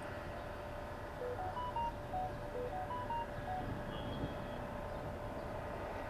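A short electronic beep melody, five quick tones stepping up and then back down in pitch, played twice in a row. It sits over a steady hiss and a faint steady hum.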